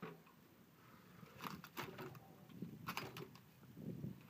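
A few faint, irregular taps and knocks, clustered a little over a second in and again near three seconds, as a queenfish hanging from a lip-grip tool is handled on the boat deck.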